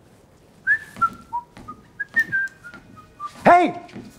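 A person whistling a short tune of quick, separate notes that step down in pitch and then climb and fall again. A brief voiced sound follows near the end.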